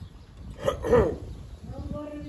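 A man's brief throat sound about a second in: a short sharp burst, then a single falling voiced note.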